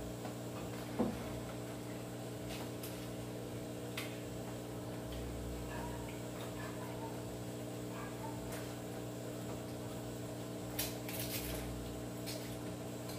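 Light handling sounds of a takeout meal being served at a table: a few faint clicks and taps of utensils and plastic containers, with a small cluster of them near the end, over a steady low hum.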